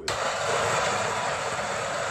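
Electric coffee grinder switched on and grinding coffee beans for espresso: a steady grinding noise that starts suddenly.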